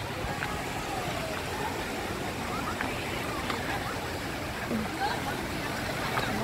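Steady wash of small surf on a sandy beach, with wind on the microphone and faint voices of people in the water in the background.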